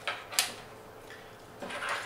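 An Ethernet patch cable being handled: one sharp plastic click from its RJ45 plug about half a second in, then a brief rustle of the cable near the end.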